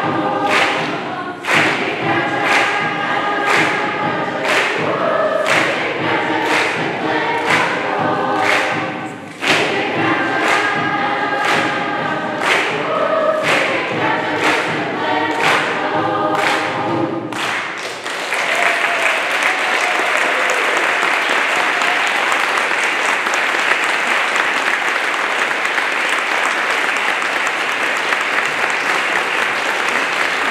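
Large mixed choir of adults and children singing a rhythmic song with a steady beat, which ends about two-thirds of the way through. Audience applause follows, steady and even.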